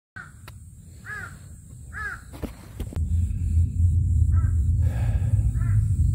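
A crow cawing: three calls about a second apart, then two fainter ones later. A steady low rumble comes in about halfway and is the loudest sound from then on.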